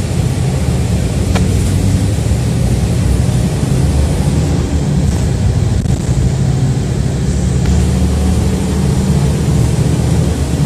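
City transit bus on the move, heard from inside the cabin: a steady low drone of engine and road noise.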